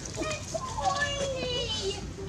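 A high-pitched voice with sliding pitch, calling over a steady low background hum.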